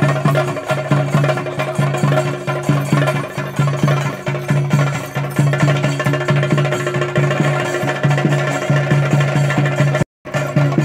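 Traditional Kerala temple percussion, chenda drums, played live in a fast, steady, unbroken rhythm of about three strokes a second.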